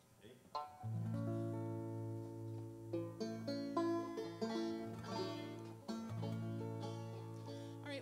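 Banjo and guitars playing a slow instrumental passage of held chords over a steady bass note, starting about a second in, with the chord changing every second or two.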